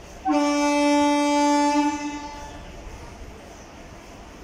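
Horn of an approaching electric local train: one long blast starting a moment in, held for about a second and a half and then fading away.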